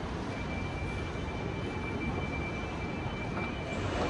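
Steady low rumble and hiss of background noise in a large airport terminal hall, with a thin, steady high tone that comes in just after the start.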